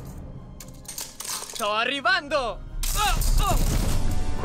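Background music under a short voiced exclamation in the middle, followed by a sudden loud burst of noise with falling whistling tones about three seconds in.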